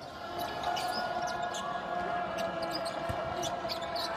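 Basketball dribbled on a hardwood arena court, with short sharp sounds of play over a steady tone in the arena noise.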